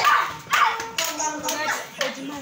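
A group of children and young people calling out short, sharp shouts, with a few hand claps among them.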